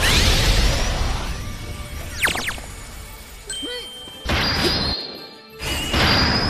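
Cartoon power-up sound effects over background music: a loud shimmering burst at the start, quick sweeping pitch glides about two seconds in, and more bursts around four seconds in and near the end.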